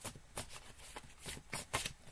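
A deck of tarot cards being shuffled by hand: a handful of short, irregular card slaps and flicks, the sharpest near the end.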